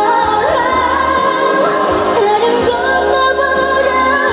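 A woman singing a Korean pop ballad live into a handheld microphone over band accompaniment, holding long sustained notes over steady bass.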